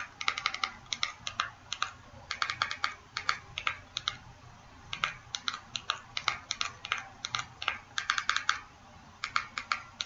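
Computer keyboard keys tapped in quick runs of several clicks, with short pauses between the runs, as a login ID is entered letter by letter on an on-screen keyboard.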